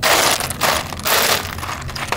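Lava rocks crunching and grinding against each other as they are pushed around by hand in a gas fire pit's rock bed, in three or four quick bursts.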